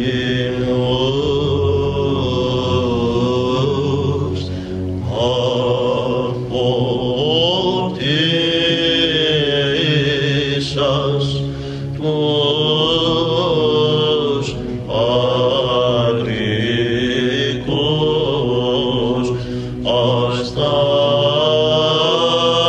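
Greek Orthodox Byzantine chant: a male chanter sings a slow, ornamented melody in phrases, over a steady low held drone (the ison).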